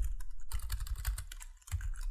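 Typing on a computer keyboard: a quick run of keystroke clicks with a brief pause about one and a half seconds in.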